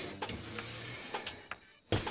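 Handling noise as a magnetic base is set onto a steel tailstock foot plate on the lathe bed: faint scraping and light knocks, with a sharp click near the end.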